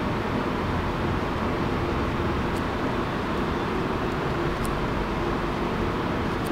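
Steady, even background noise with a faint low hum running under it, and a couple of faint ticks.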